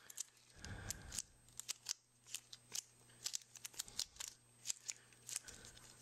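Gloved hands kneading two-part epoxy putty: faint, irregular little clicks and crinkles from the gloves and putty as they are squeezed and worked, several a second.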